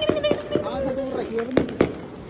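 Firecrackers going off: two sharp bangs about a second and a half in, a quarter of a second apart, under a person's long drawn-out shout that drops in pitch before the bangs.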